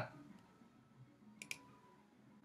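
A computer mouse button clicked: two short, sharp clicks a fraction of a second apart about one and a half seconds in, against near silence.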